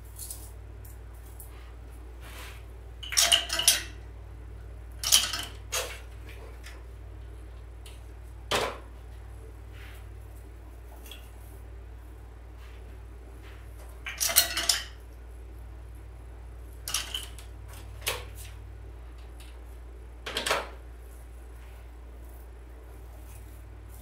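Short, scattered bursts of rustling and scraping, about seven in all, as artificial pine stems are pushed and worked into a candle ring built on a metal frame. A steady low hum runs underneath.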